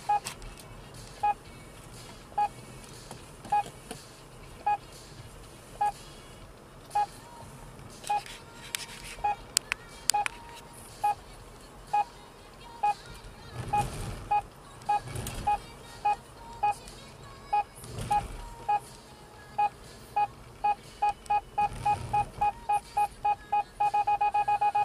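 In-car speed camera warning device beeping, about one beep a second at first and quickening to several a second toward the end: the alert for an approaching section (average) speed check. A low road and traffic rumble runs underneath, swelling a few times.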